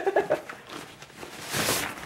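Rustle and swish of a soft cloth sleeve being pulled off a laptop, loudest as a short swish near the end, after a brief laugh at the start.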